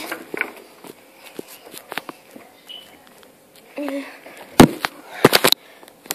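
Handling noise of a phone or tablet moved through a pile of clothes: fabric rubbing on the microphone and scattered knocks, with a quick run of loud, sharp knocks about two-thirds of the way in.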